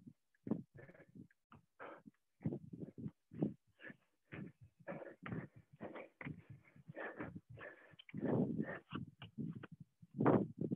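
Faint, choppy breathing and short puffs or grunts from people doing jumping lunges. The sounds come and go irregularly, cut off to silence in between by video-call audio, with a longer, louder run of breathing near the end.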